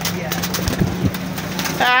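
Domestic pigeons cooing in a loft, low wavering coos about a second in over a steady low hum.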